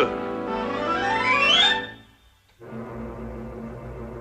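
Orchestral music: a run of notes climbs steadily higher for nearly two seconds, breaks off into a short silence, then quieter held notes follow.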